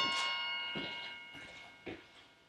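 A bell or chime, struck just before, ringing out with several steady overtones and fading away over about two seconds, with a soft knock near the end.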